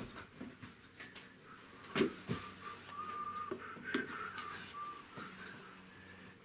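Soft, faint whistling of a few short notes in a small room, with a few light clicks and taps around it.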